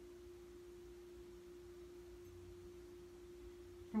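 A faint, steady single-pitched hum with nothing else happening: the room's background tone between lines of talk.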